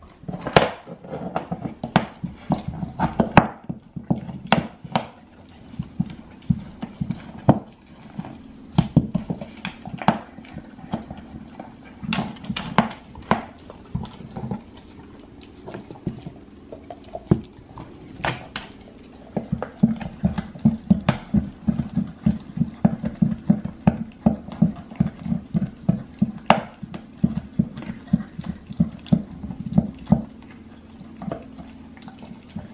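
Great Dane chewing and gnawing a raw deer shank: wet crunching and sharp clicks of teeth on bone, irregular at first, then a quick steady run of chews through the last third.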